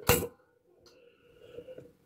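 One sharp snap as a homemade battery-and-capacitor spot welder fires a roughly one-millisecond pulse through copper probes into a 0.2 mm nickel strip on an 18650 cell. This fuses the strip to the cell. A few faint clicks follow near the end.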